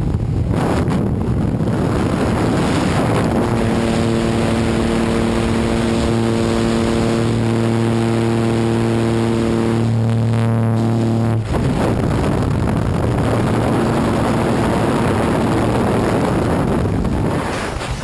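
Aircraft engine and propeller drone with rushing wind at an open jump-plane door. The engine's steady tone cuts off suddenly about two-thirds of the way through, leaving loud freefall wind noise on the microphone.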